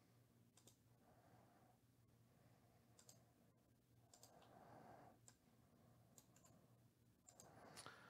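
Near silence: room tone with a few faint, scattered computer mouse clicks.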